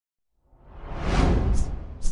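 A whoosh sound effect for a logo animation. It swells in about half a second in, peaks, then fades, with a short high swish near the end.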